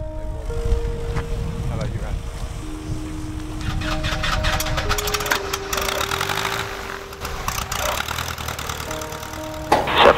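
Background music of slow sustained notes over the steady low rumble of a light single-engine propeller plane's piston engine running.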